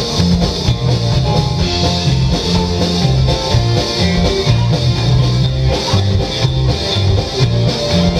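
A live rock band plays an instrumental stretch with no singing: electric guitar over a bass line and drums, at a steady beat and a loud, even level.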